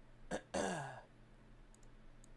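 A man clearing his throat: a short catch, then a longer, louder voiced sound that falls in pitch, all within about a second.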